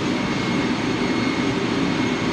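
Steady drone of ship's machinery and ventilation heard inside an engine control room, with a faint thin whine held throughout.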